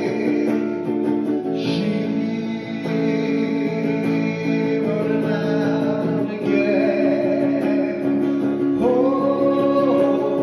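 Electric guitar strumming sustained chords, with a man singing into a microphone at times.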